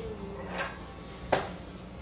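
Two sharp clinks of a plate knocking against crockery, about a second apart, as the plate is picked up off the counter.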